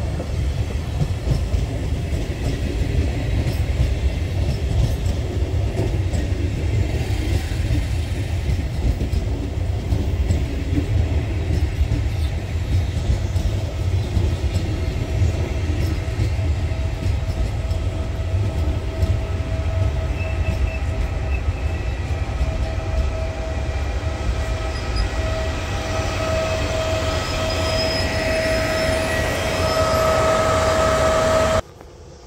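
Push-pull regional train of Medie Distanze coaches rolling past along the platform track with a steady low rumble and wheel clatter. In the last seconds the E.464 electric locomotive at its tail passes with a steady high whine from its traction equipment, which grows louder towards the end.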